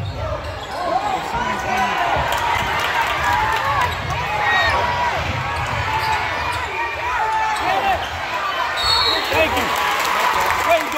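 Basketball bouncing on a hardwood gym floor during play, amid spectators' voices.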